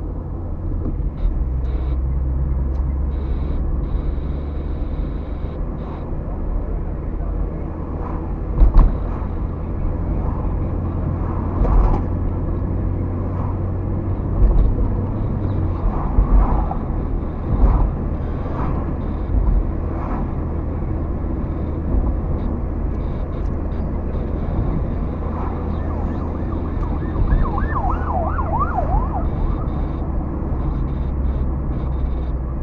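Car driving, heard from inside the cabin: steady low road and engine rumble, with several thumps of the car going over bumps, the loudest about nine seconds in. Near the end a brief tone wavers rapidly up and down, like a siren.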